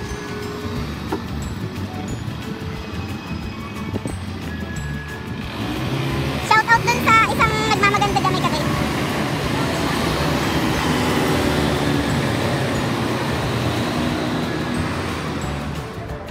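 Street traffic with cars and scooters passing; the noise swells about five seconds in as a vehicle goes by and stays up for most of the rest. Background music plays under it, and a brief pitched sound, like voices, comes just after the swell.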